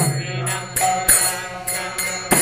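Kirtan music in the gap between sung lines: hand cymbals jingling about twice a second over a steady low drone, with a faint voice and a short melodic phrase near the middle.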